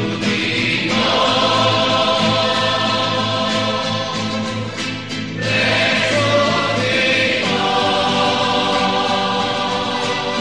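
A choir singing a slow religious song in long held chords. The chord changes about a second in, around the middle, and again about three-quarters of the way through.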